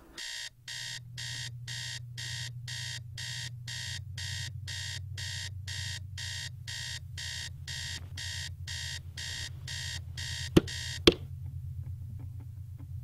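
Electronic alarm clock beeping in a fast, even run of about three beeps a second, which stops about ten and a half seconds in. Two sharp knocks follow close together, the loudest sounds here, over a steady low hum.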